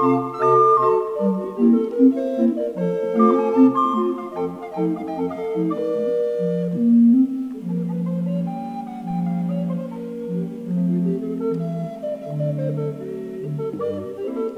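An ensemble of recorders, from soprano down to bass recorders, all played by one player and layered, playing a ragtime piece in several parts. In the second half the low recorders hold long sustained notes under the moving upper lines.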